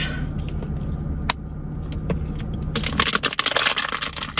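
Steady hum of an idling car heard inside the cabin, with a single click about a second in. From near three seconds a burst of rapid crackling and clicking sets in and is the loudest sound.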